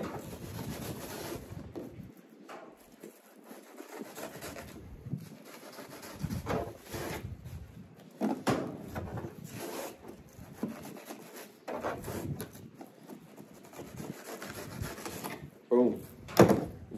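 A knife skinning a zander fillet on a plastic kayak deck: irregular scraping, rubbing strokes as the blade is worked between skin and flesh while the skin is pulled back.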